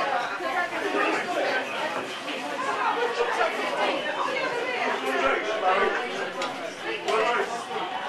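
Indistinct background chatter of several people talking at once in a room, with a few faint clicks.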